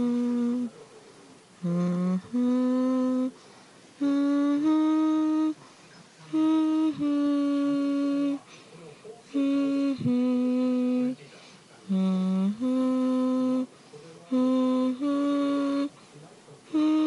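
A person humming a slow, lullaby-like tune: held, steady notes in short phrases of two or three, with brief pauses between phrases.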